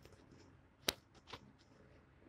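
Two clicks over a quiet background: a sharp one about a second in and a fainter one about half a second later.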